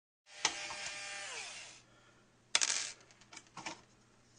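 Intro sound effect for a logo reveal: a rushing noise with several falling tones for about a second and a half, then a sharp clinking hit about two and a half seconds in, followed by two lighter hits.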